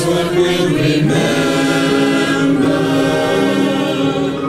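Choral singing: several voices holding long notes together, moving to a new chord about a second in.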